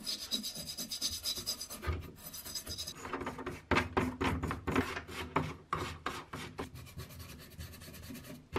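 Brushes scrubbing a wet grey paste over the metal parts of an antique oil lamp. For about the first three seconds a small wire brush scrubs fast and evenly. After that come slower, separate scrubbing strokes, about two or three a second.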